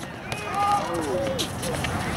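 Distant voices of players and spectators calling out across the court, with a few faint sharp knocks.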